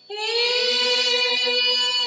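A group of mostly female voices enters together just after the start and holds one long sung note in unison over a steady drone: choral singing of an Assamese Borgeet.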